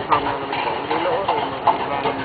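Voices talking nearby, untranscribed, with a couple of short clicks, from plastic shock-tube detonating line being handled by hand.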